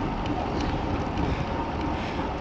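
Steady wind noise buffeting the microphone of a bike-mounted camera while riding a road bike.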